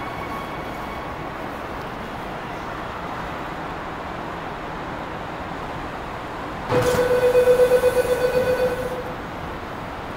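Subway train standing at the station with a steady low hum. About seven seconds in, the platform screen doors and train doors open with a sudden rush and a pulsing electronic door tone that lasts about two seconds.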